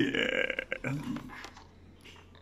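A man's short, rough vocal sound as the sung harmony stops, followed by a few soft clicks as the sound fades away.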